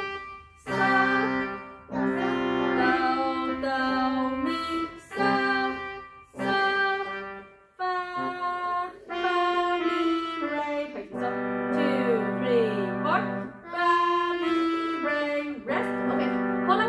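Digital pianos played together in a slow, simple melody of long held notes, about one to two seconds each, with short breaks between them. The notes hold steady instead of dying away like an acoustic piano's.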